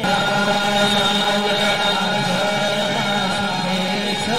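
Many voices chanting together on long held notes, cutting in suddenly at the start.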